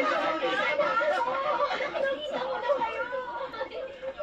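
Several voices talking and exclaiming over one another: excited group chatter, as heard through a TV set's speaker.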